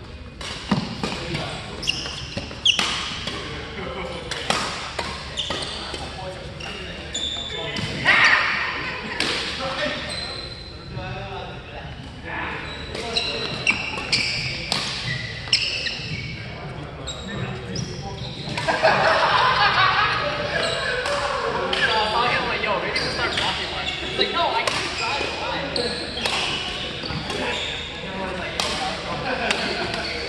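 Badminton rally in a large hall: racket strings hitting the shuttlecock in short sharp cracks at irregular intervals, mixed with footsteps on the court floor, with a roomy echo. Voices come in alongside it, busier after about two-thirds of the way through.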